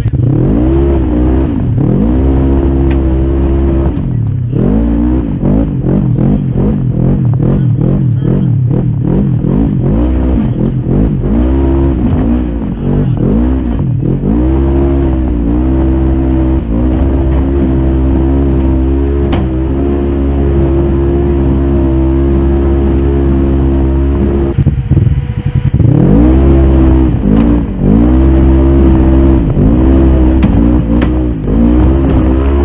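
Polaris RZR XP 900's twin-cylinder engine revving up and down repeatedly under load as the side-by-side climbs a rocky hill, then held at high revs for several seconds. It drops off briefly near the end and revs up again.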